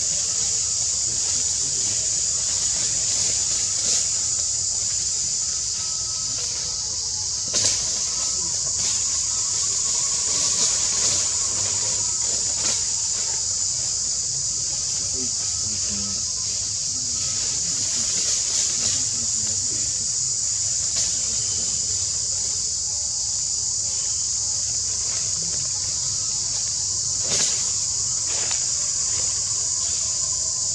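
Forest insect chorus: a steady, high-pitched drone of insects that does not let up.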